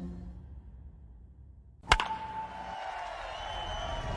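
A commercial's music fading out into a short near-quiet gap, then a single sharp hit sound effect about two seconds in. The hit opens the next commercial's music, with a held electronic tone under it.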